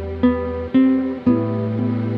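Acoustic steel-string guitar played through an amp and effects, picking three single melody notes about half a second apart that ring on, over a sustained low bass note that steps up in pitch with the third note.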